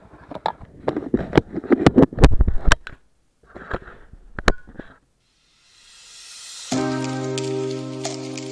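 A jumble of sharp clicks and knocks, broken by two short dead-silent gaps, then a rising whoosh leading into background music with sustained chords that starts about two-thirds of the way in.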